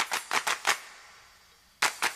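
Sharp percussive hits from a music track: a quick run of about five that fades away within the first second, a near-silent gap, then a loud sudden hit near the end as the beat comes back in.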